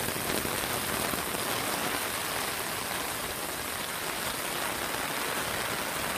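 Torrential rain falling steadily onto flooded ground, a loud, even downpour with no let-up.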